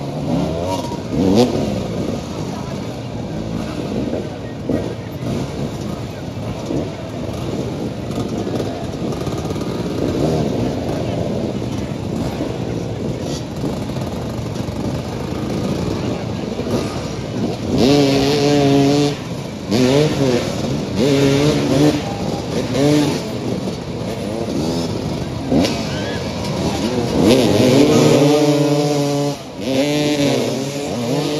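Several motoball motorcycles running and revving together, their engine notes rising and falling as riders accelerate and brake around the ball. From about two-thirds of the way in, one or more bikes hold high revs in short bursts, loudest near the end.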